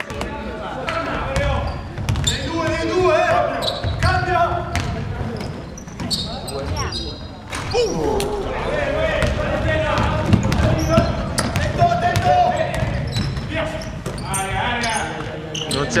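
A basketball bouncing on the wooden floor of a large gym, with repeated sharp knocks, amid players' and spectators' voices calling out through the hall.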